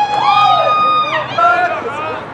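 People shouting long, drawn-out cheers, several voices overlapping, each held for up to about a second.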